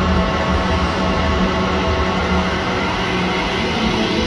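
Live four-piece rock band of electric guitar, bass, keyboards and drums playing a steady instrumental passage of sustained chords over a low bass.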